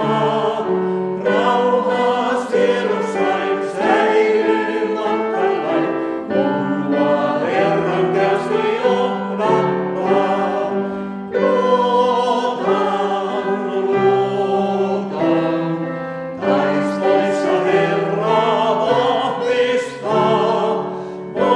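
Mixed vocal quartet of two men and two women singing a Christian song in four-part harmony, with held notes changing every second or so.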